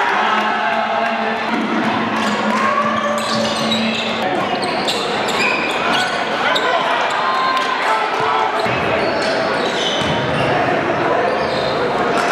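Live game sound in an echoing gymnasium: a basketball bouncing on the hardwood court amid the voices of players and spectators, with a steady low hum for the first few seconds.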